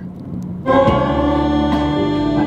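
A song starts playing through the car stereo of a BMW M4 F82 fitted with new BimmerTech AlphaOne under-seat subwoofers, heard inside the cabin. It comes in suddenly a little under a second in, with a strong, steady bass beneath it.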